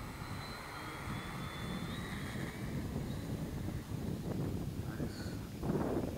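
Electric motor and propeller of a small RC model warplane whining at high throttle on a grass-field takeoff, the thin high whine fading after about three seconds as the plane climbs away. Wind buffets the microphone throughout.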